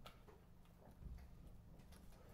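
Faint, irregular clicking at a computer as it is operated, a few clicks a second over near silence.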